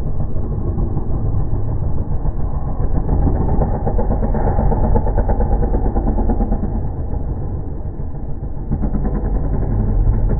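Dirt bike engines running and revving as several freestyle motocross bikes ride around, getting a little louder near the end as a rider launches off the ramp.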